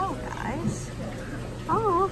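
A woman cooing at the fish in a high, sing-song voice, her pitch swooping up and down in short wordless sounds near the start and again near the end, over a low steady hum.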